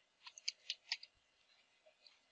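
Computer keyboard typing: about six quick, faint keystrokes in the first second, then a pause with one more faint click near the end.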